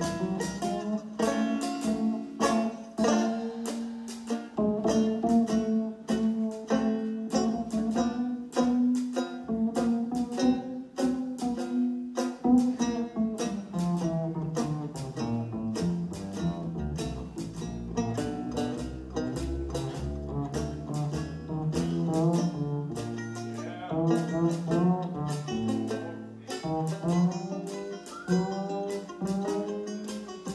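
A traditional jazz band's rhythm section playing an instrumental passage: plucked string chords on a steady beat over a double bass walking from note to note.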